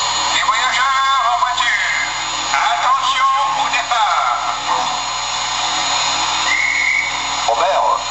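Recorded French station scene played by the MTH Chapelon Pacific model locomotive's onboard sound system: indistinct voices over a steady background, with a short high tone about six and a half seconds in.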